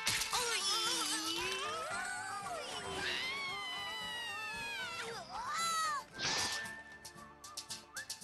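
Cartoon soundtrack: music under a character's long, wavering, strained vocal cries, with one long falling wail in the middle, then steady held notes near the end.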